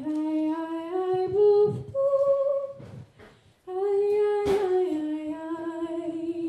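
A woman singing a Norwegian lullaby unaccompanied into a microphone, slow held notes that step gently up and down. She pauses briefly about three seconds in, and a short sharp sound cuts across the voice about a second and a half later.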